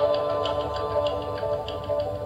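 Closing instrumental bars of a song: held chords with a light, regular ticking beat over them, slowly getting quieter.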